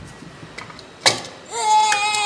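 A single sharp click about a second in, then a child's long, high, steady straining cry as he pumps a jack to lift a quad.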